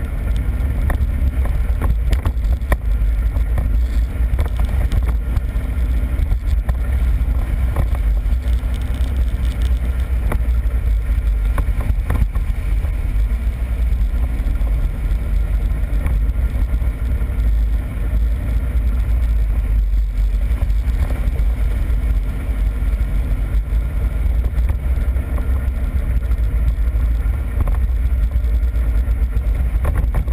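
ATV riding along a rutted dirt trail, heard from a camera mounted on its front: a steady, heavy low rumble from the engine and the ride, with frequent small knocks as the machine goes over the bumps.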